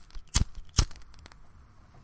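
Two loud sharp clicks less than half a second apart, then a few faint ticks over a low rumble.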